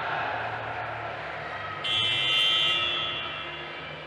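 A sports-hall scoreboard buzzer sounds once, starting suddenly about two seconds in and lasting about a second, its echo fading in the hall. Under it is the hall's background murmur.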